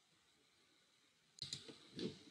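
Near silence, then a single computer mouse click about one and a half seconds in.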